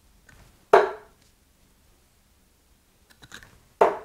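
Two Loxley Steve Hine 23.5-gram tungsten steel-tip darts thudding into a bristle dartboard, one about a second in and one near the end. A couple of faint clicks come just before the second.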